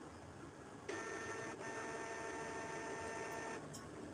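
Printer mechanism running with a steady whine of several fixed tones. It starts about a second in, falters briefly, and stops shortly before the end.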